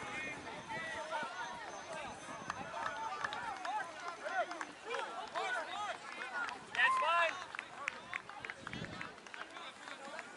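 Several voices of rugby players and sideline spectators shouting and calling out over one another during open play, with the loudest shout about seven seconds in.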